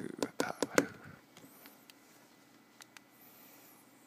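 Quick fingertip taps on a tablet's glass touchscreen, about four in the first second at a steady beat over a counting voice, then they stop. The rest is near-silent room tone with a couple of faint clicks.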